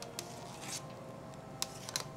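A few faint metal clicks of a fine-mesh strainer as it skims scum off a pot of simmering chicken-bone stock and knocks against the pot and a steel bowl.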